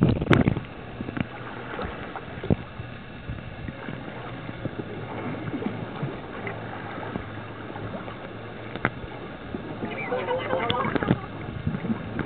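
Muffled underwater noise picked up by a camera held below the surface, with scattered sharp clicks and knocks and a faint low hum. About ten seconds in, a short flurry of bubbling.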